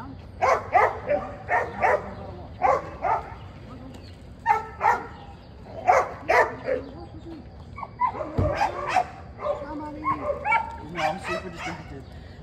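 A dog barking repeatedly in short barks, mostly in quick pairs about a second apart, with a low thump about eight seconds in.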